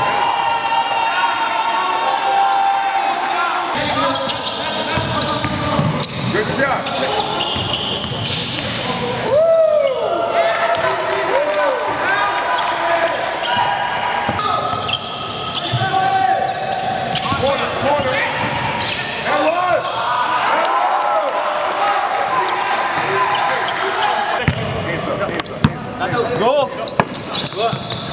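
Live basketball play on a hardwood court in a large gym: a ball bouncing, sneakers squeaking in short bursts, and players shouting to each other.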